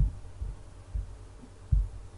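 Four dull, low thumps, the first at the very start and the last near the end, over a faint steady low hum.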